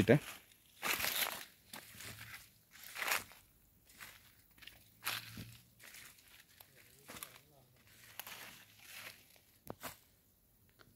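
Footsteps crunching through dry leaf litter and undergrowth, roughly one step a second.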